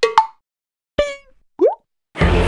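Cartoon-style sound effects for an animated logo intro, with silence between them: quick pops with falling pitch at the very start, a plucked ringing note about a second in, and a short rising bloop near the end.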